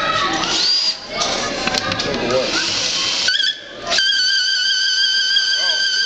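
Cordless drill driving the rollers of a wooden prototype ball-lift mechanism, with voices over a noisy rush for the first three seconds. After a brief drop it settles into a steady high-pitched motor whine for the last two seconds.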